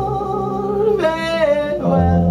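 Live band music with singing: held notes from voice and strings, with the sung line sliding from one note to another about halfway through.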